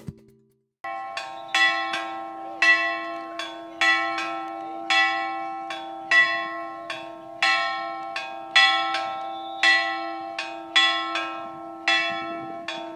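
A single chapel bell hung on a wooden post, rung by hand in quick strokes, about two a second in loose pairs, each stroke ringing on into the next; it starts about a second in. It is rung for the start of mass.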